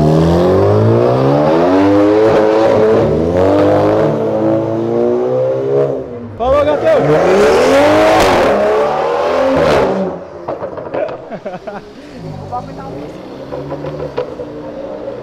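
A red Audi RS3 sedan's turbocharged five-cylinder accelerates hard away, its engine note climbing in steps through several upshifts for about six seconds. Then a BMW 2 Series coupe pulls away with a loud rising engine note and a raspy edge for about three seconds. After that a quieter engine sound follows.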